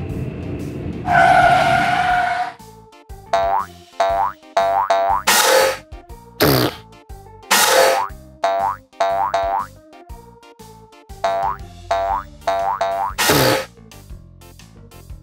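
Cartoon boing sound effects over background music. A loud held blare comes about a second in, then a run of springy rising boings follows every half second or so. A few downward swooping whooshes are mixed in.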